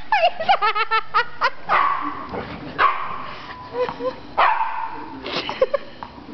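Dogs barking and yipping in play while wrestling. A quick run of short yips comes in the first second and a half, followed by a few longer, spaced-out barks.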